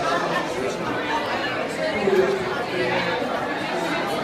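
Crowd chatter: many people talking at once in a busy hall, a steady babble of overlapping voices with no single voice standing out.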